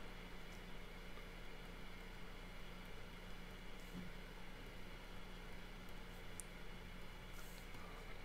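Quiet room tone: a steady low hum and faint hiss, with a couple of small faint ticks.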